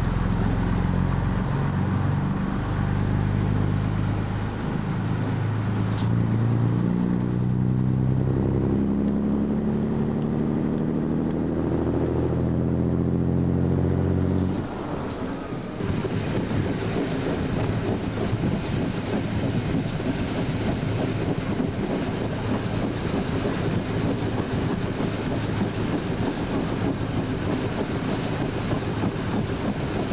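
Diesel engine of an FS ALn 668 railcar pulling under power, its note climbing steadily as the railcar gathers speed, then dropping away abruptly about halfway through. After that, mostly the rush of wind on the microphone and the running noise of the railcar.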